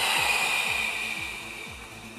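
A woman's long audible exhale through the mouth, the Pilates breath. It is a breathy rush, loudest at the start and fading away over nearly two seconds. Background music with a steady beat plays underneath.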